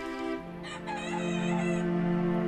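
A rooster crowing once, for about a second, over a low, sustained string-music note.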